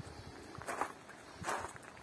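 Footsteps of someone walking outdoors: two steps, about a second in and again near the end.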